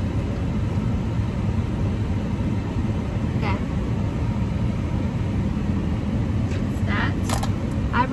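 Steady low rumble of a vehicle heard from inside a car's cabin, with a couple of brief faint sounds over it about three and a half and seven seconds in.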